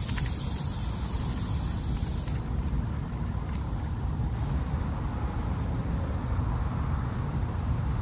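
Outdoor background sound: a steady low rumble under a high insect buzz, which stops about two seconds in.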